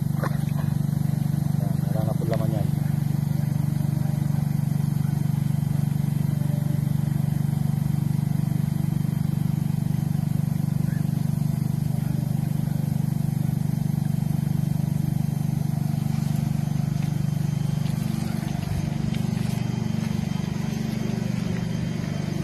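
Steady low drone of an air blower feeding the aeration lines of a biofloc fish tank. Its pitch shifts slightly near the end.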